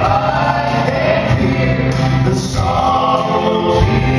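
Male gospel quartet singing in close harmony over an instrumental accompaniment.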